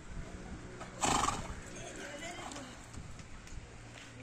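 A horse whinnying once, a short loud call about a second in that trails off over the following second.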